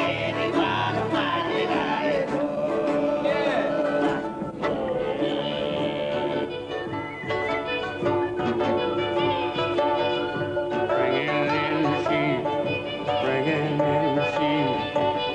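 Live folk ensemble jam: Tuvan throat singing with long held tones and wavering high overtones over a steady drone, with harp and plucked and bowed string instruments.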